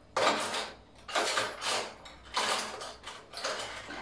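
Cutlery and kitchen utensils rattling and clinking in an open kitchen drawer as it is rummaged through for a knife, in four bursts about a second apart.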